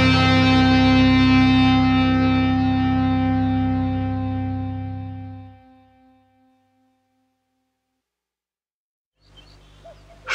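The last sustained, distorted electric-guitar chord of an instrumental metal track ringing out and slowly decaying, dying away about six seconds in. After a few seconds of silence, a faint low hum begins near the end.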